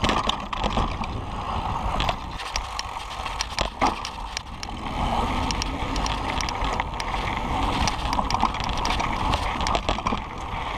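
Kona Process 134 full-suspension mountain bike riding down a rocky dirt trail: tyres running over dirt and stones in a continuous rough rumble, with frequent sharp clicks and rattles from the bike jolting over the rocks, and one harder knock a little before the halfway point.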